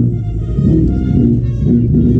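Marching brass band playing loudly, its low brass (sousaphones and bell-front baritone horns) carrying a moving line of notes.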